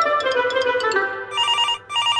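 A short plucked-string music cue with a descending run of notes, then a telephone ringing: a warbling double ring begins about a second and a half in.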